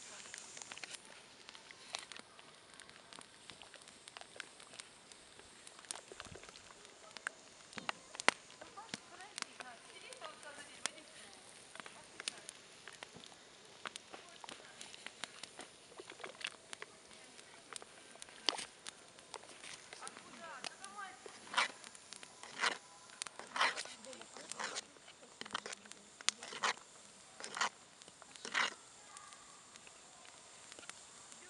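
A metal ladle knocking and scraping against a cast-iron pot as it stirs thick boiling porridge: scattered sharp clicks that come louder and more often, about one a second, in the second half.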